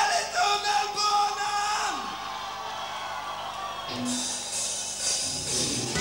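Live rock band: a male lead singer's voice holds a note and glides down over the first two seconds, then the band plays on and comes in louder with drums near the end.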